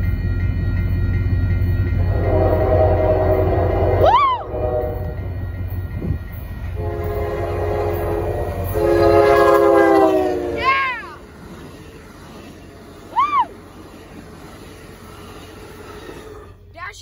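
Lead Amtrak P32-8 diesel locomotive sounding its multi-note air horn for the grade crossing as it approaches: one long blast, then a second, longer blast that swells louder, over the low rumble of the train.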